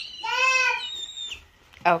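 A young girl's high-pitched excited squeal, one held note lasting just under a second.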